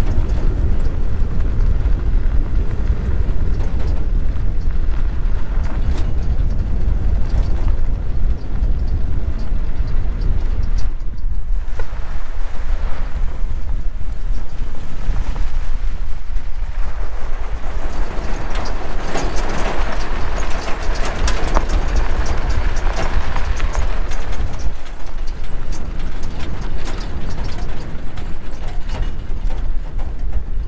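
Truck driving on a gravel dirt road: a steady low rumble with wind buffeting the microphone, and the crunch and patter of off-road tyres on loose gravel growing louder in the middle.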